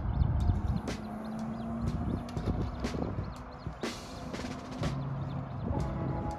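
Wind rumbling on the microphone, with scattered sharp clicks from a spinning rod and reel as a lure is cast out and reeled in.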